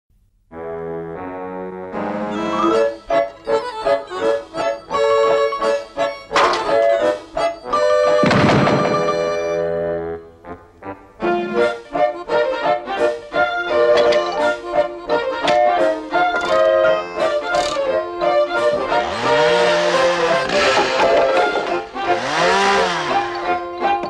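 Instrumental theme music with quick, bouncy notes. A few noisy sound-effect bursts break in, the loudest about eight seconds in and again near the end.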